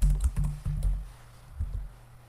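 Computer keyboard keys being typed: a quick run of keystrokes in the first second, then a couple more about three-quarters of the way through.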